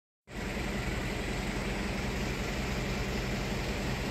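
A steady low hum under an even hiss from a running machine, cutting in a moment after the start and holding level with no change.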